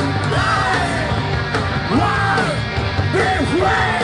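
Live punk band playing loud, with drums, bass and guitar under a singer shouting about three vocal phrases, each swooping up and down in pitch.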